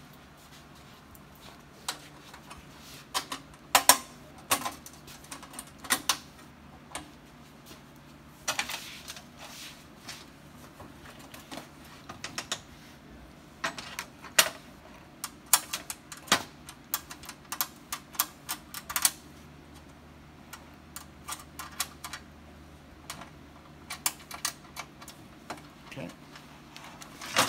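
Irregular metallic clicks and taps as nuts are fitted by hand onto the bolts of the sheet-metal front cover of a clay target trap machine, with the loudest knocks about four seconds in.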